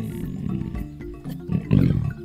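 A lion growling low about a second and a half in, over background music: the big cat's vocal warning to back off.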